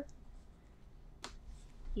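Quiet room tone with a single short, sharp click a little over a second in.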